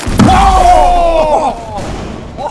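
A sudden loud boom just after the start, with a low rumble lasting almost two seconds, while several people scream and yell over it.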